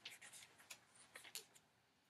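Faint rustling of paper sheets being handled and turned, a string of short crinkles in the first second and a half.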